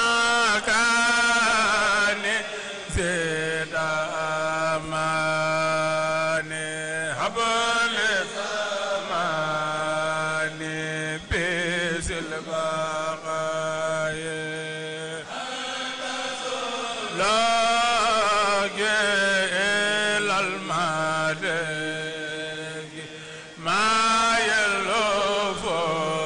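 A group of men chanting Mouride khassida (religious poems) together into microphones, with long held notes in phrases of a few seconds each.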